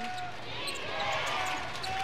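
Basketball being dribbled on a hardwood court, a series of short bounces over the steady murmur of an arena crowd.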